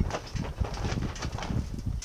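Irregular light clicks and knocks of metal parts being handled: a cast ratchet wheel and its pawl touching and shifting in the hands.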